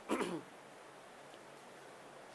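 A man's short voiced sound, falling in pitch, right at the start, then quiet room tone.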